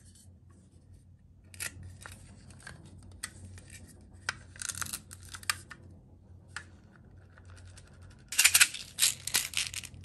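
Small hard plastic toy pieces handled close up: scattered sharp clicks and short scrapes, then a louder run of crackly rattling near the end.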